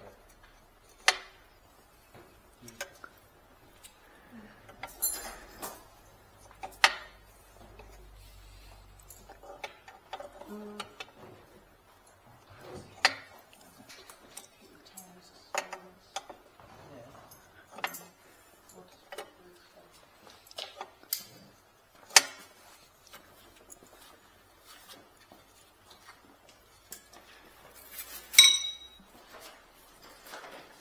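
Scattered sharp metallic clinks and taps of a hand tool against the chrome exhaust of a BMW R nineT, about one every second or two, as the O2 sensor is worked out of its holder. Near the end comes a louder clink that rings briefly.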